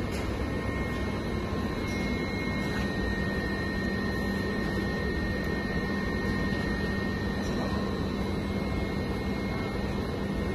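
Plastic sheet extrusion line running steadily: a continuous machine hum with a low drone and thin, steady high-pitched tones, while the winder coils the extruded sheet.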